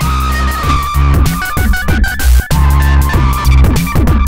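Drum pattern from a Dave Smith Tempest analog drum machine, heavily saturated and distorted through an Elysia Karacter with its FET shred mode and turbo boost engaged. Deep kicks that drop in pitch repeat under steady synth tones, with a short drop in level about two and a half seconds in.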